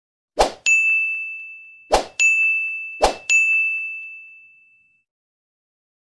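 Sound effects of an animated subscribe end screen: three short sharp pops, each followed a moment later by a bright bell-like ding that dies away, the last ding ringing out longest.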